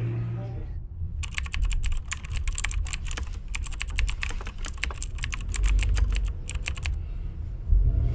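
Typewriter-style keyboard typing sound effect: a rapid run of clicks lasting about six seconds while a caption is typed onto the screen, over the low rumble of a car on the road.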